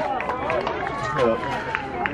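Indistinct background voices: several people chattering at once, with no clear words.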